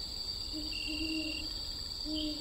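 Outdoor evening ambience: a steady high-pitched insect drone with a shriller trill coming and going, and a low hooting call from about half a second in, lasting under a second.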